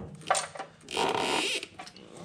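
Ratchet wrench clicking in short bursts as the engine's oil sump drain plug is tightened back in, with a denser run of clicking lasting about half a second, about a second in.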